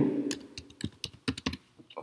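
Computer keyboard keys being typed: a quick, uneven run of separate key clicks, about half a dozen keystrokes.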